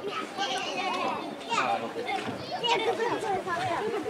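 Children's voices shouting and calling out, several overlapping, with some adult chatter mixed in.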